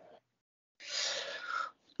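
A person's audible breath, one short noisy breath of just under a second starting about a second in, with no voice in it.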